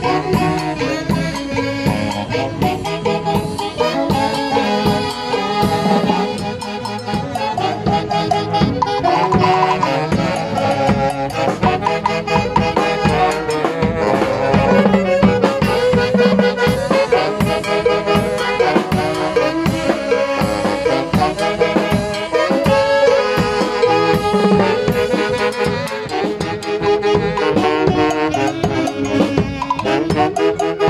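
Live dance band playing: a section of saxophones carrying the melody together over a drum kit and timbales keeping a steady beat.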